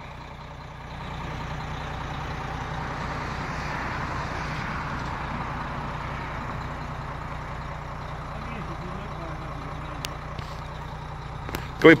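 Car carrier's hydraulic system running steadily to raise the upper deck, a steady mechanical noise over a low drone that comes up about a second in. There is one short click about ten seconds in.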